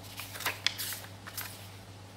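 Paper pages of a small printed instruction booklet being turned by hand: a quick rustle with a couple of sharp crinkles within the first second and a half.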